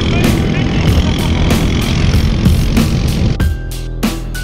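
A motorcycle tricycle running on the road, its engine and road noise heavy under background music with a steady beat. About three and a half seconds in the vehicle noise cuts out, leaving only the music.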